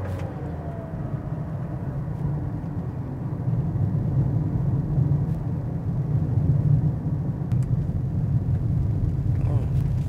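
Steady low tyre and road rumble from a small car rolling on Michelin Energy XM2+ tyres over asphalt at around 40 km/h. It grows louder from about three seconds in as the car picks up a little speed.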